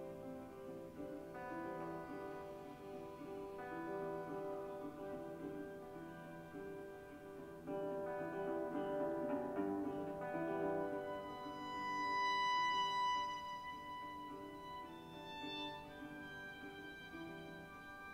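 Slow live chamber music of violin and guitar with a small instrument played at the mouth, in long held notes that swell to their loudest about two-thirds of the way through.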